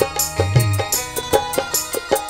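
Live band playing an instrumental break in a Bengali baul folk song: a steady beat of hand-drum strikes under a sustained melody, with no singing.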